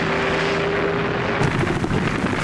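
Steady engine drone with a held hum over a dense rumble. About one and a half seconds in it turns rougher and crackly.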